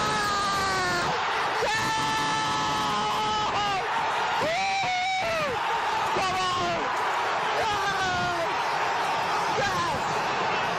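Football stadium crowd cheering and yelling after a goal, with individual fans shouting close by over the steady roar of the stands.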